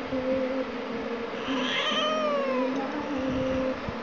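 A domestic cat making a low, drawn-out moaning call, with a higher yowl that slides down in pitch about one and a half seconds in. This is the warning vocalising of an irritated cat that does not want to be picked up.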